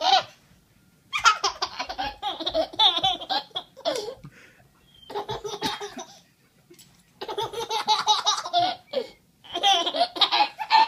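A baby laughing hard in four bursts, with short pauses between them.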